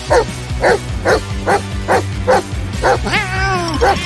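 A dog barking repeatedly, about two barks a second, over background music. Near the end a drawn-out cry rises and falls in pitch.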